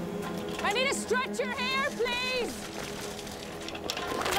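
A voice calling out a run of short, high-pitched shouts in the first half, over a steady low drone.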